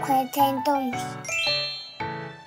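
A bright tinkling chime sound effect running quickly upward in pitch about a second in, over gentle children's background music.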